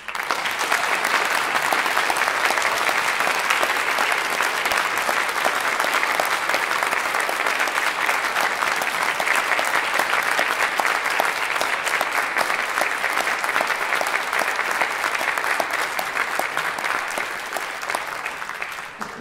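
Audience applauding steadily right after the piece ends, the clapping tapering off near the end.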